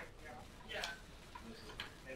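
Faint, distant speech in a room, with two light clicks about a second apart.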